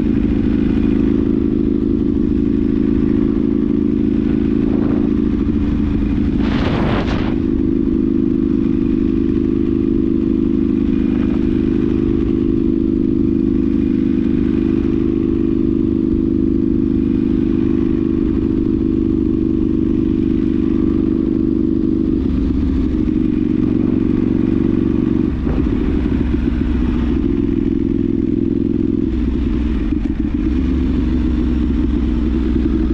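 Ducati Streetfighter 1098's L-twin engine running steadily as the motorcycle cruises, heard from on board. There is a brief rush of noise about seven seconds in, and the engine note changes, with more low rumble, over the last several seconds.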